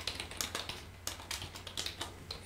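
Computer keyboard typing: a run of quick, irregular keystroke clicks, faint.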